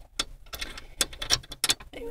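A small hand tool working a screw out of the ignition switch on a car's steering column: a series of sharp, irregular clicks and ticks.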